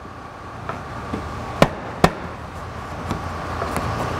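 Plastic windshield cowl trim of a 2015 Subaru Forester being pressed into place by hand, giving a few sharp clicks as its clips snap in; the two loudest are about half a second apart near the middle.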